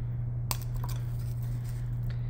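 A graham cracker snapped in half by hand: one sharp crack about half a second in, followed by a smaller click.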